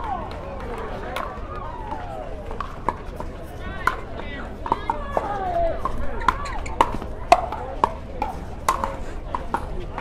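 Pickleball rally: sharp pops of paddles striking the plastic ball, about ten hits at uneven spacing, the loudest a little after the middle, over a background of voices.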